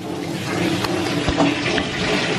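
A steady rushing noise with a low, even hum under it and a few faint clicks.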